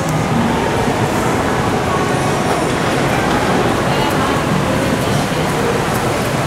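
Steady rushing background noise echoing in a concrete parking garage, the kind made by traffic and rain, with faint voices mixed in.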